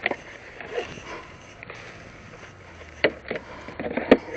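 Clicks and knocks from a push lawn mower being handled with its engine off: a click right at the start and two sharp knocks about three seconds in, as the grass catcher at the rear is gripped and fitted, with faint scuffing between them.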